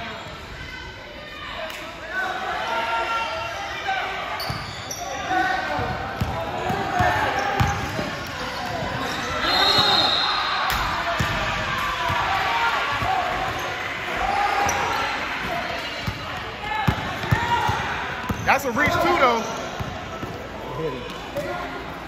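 A basketball being dribbled on a gym floor, with repeated thumps, under the voices of players and spectators calling out.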